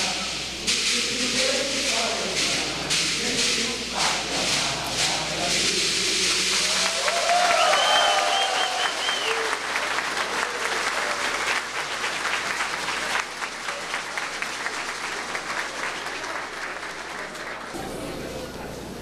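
Audience applauding, with a few voices calling out in the first half; the clapping grows loudest about eight seconds in and then slowly thins out.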